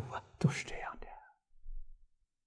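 An elderly man speaking Mandarin softly, his sentence trailing off about a second in, then a faint low thump near the end.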